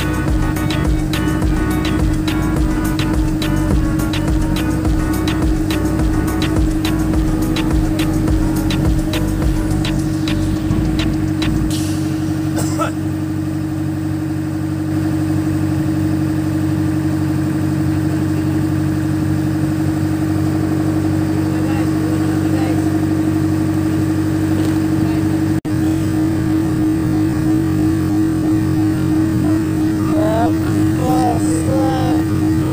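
Small fishing boat's engine running steadily under way, a constant drone. Background music with a regular beat plays over it for roughly the first twelve seconds.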